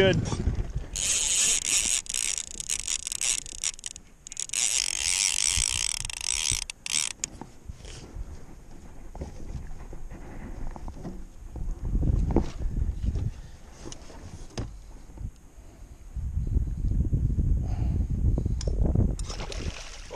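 Fishing reel ratcheting in two high-pitched buzzing stretches of a few seconds each in the first seven seconds, as a hooked lake trout is fought on lead core line. Later, irregular low rumbling comes and goes.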